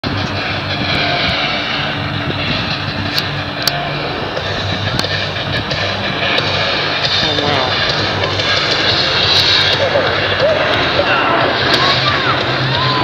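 Steady jet engine noise from a formation of Snowbirds CT-114 Tutor jet trainers, with people's voices mixed in, louder toward the end.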